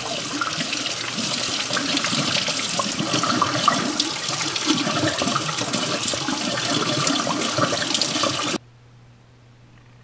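Sink faucet running, water pouring and splashing over hands and a squirrel hide being rinsed; the flow cuts off suddenly near the end as the tap is shut.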